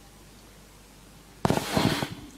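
Quiet room hum in a pause of speech, then about a second and a half in a brief burst of bumps and crackle close to the microphone: handling noise on the pulpit microphone.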